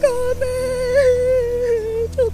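A woman's voice holding one long, slightly wavering note, a drawn-out wail of grief, over soft, steady background music.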